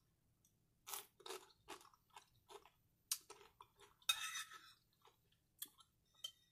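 A person chewing a mouthful of soup with tortilla chips in it, close to the microphone: a string of irregular crisp crunches starting about a second in, with a longer crunch around four seconds.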